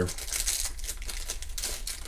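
Rapid light clicks and rustling from hands handling tiny laptop screws and picking up a small screwdriver.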